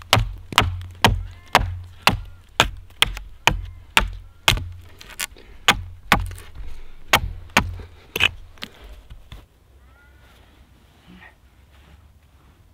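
Axe blade chopping a point onto a birch stake braced against a wooden stump: sharp, evenly spaced strikes about two a second that stop about eight seconds in. Faint bird chirps follow.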